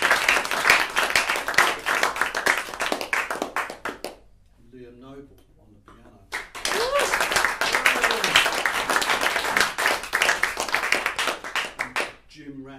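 Small audience applauding with a whoop, the clapping dying away about four seconds in. After a short lull, a second round of applause with another whoop starts about six seconds in and lasts until near the end.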